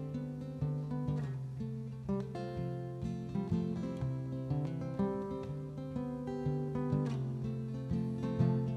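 Acoustic guitar playing a soft instrumental passage, notes struck about twice a second and ringing out over low held bass notes.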